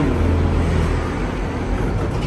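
Steady low hum with even background noise, with no clear single event.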